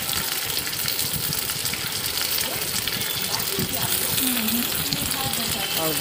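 Large green chillies sizzling steadily in hot oil in a kadhai, salted and stirred with a steel spatula.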